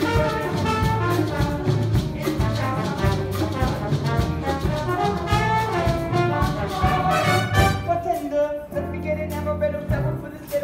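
Brass-led Latin dance music played by a band, with trumpets and trombones over steady percussion. About eight seconds in the drums drop out and a low held note carries on.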